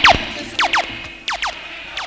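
Sound system siren effect firing repeated falling 'laser' zaps, mostly in quick pairs about every two-thirds of a second. They play over the tail of a reggae tune whose bass cuts out about halfway through.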